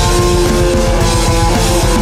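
Loud heavy rock music: electric guitar holding chords that change every fraction of a second over drums.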